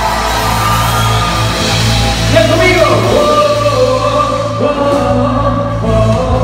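Live band music: a drum kit and electric bass with a lead voice singing over them.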